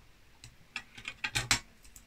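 A few small clicks and scrapes as a pull-tab metal lid comes free of a plastic can, the loudest pair about one and a half seconds in.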